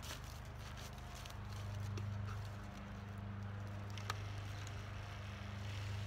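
A ShurFlo 4008 115 V diaphragm water pump running with a steady low hum and rapid pulsing, a little louder about a second and a half in. It is self-priming, pulling water up its PVC intake pipe before any water reaches the hose. A single click comes about four seconds in.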